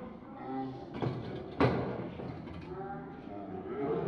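Shouting voices from a football pitch, heard across an open stadium, with one sharp knock about a second and a half in.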